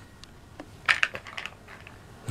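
Light plastic clicks and taps, toy play-food pieces knocking together as they are handled and sorted into a plastic bucket, in a short cluster about a second in.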